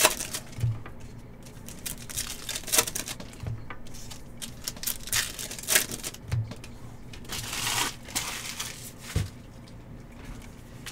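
Foil wrapper of a Bowman's Best baseball card pack crinkling and tearing as it is pulled open by hand. Near the end the cards are handled and slid on the table in a longer rustle, with a few soft knocks throughout.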